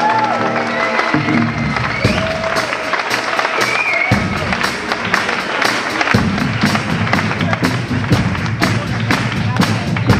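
Live rock band playing on stage: drum kit, electric and acoustic guitars and bass. Held guitar notes and pitch glides sound early on, the low end fills in about four seconds in and again about six seconds in, and steady drum hits come several a second toward the end.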